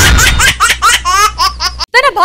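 Laughter sound effect for the show's logo sting: a rapid string of short, high-pitched laughs over a low bass from the music, cut off abruptly just before the end.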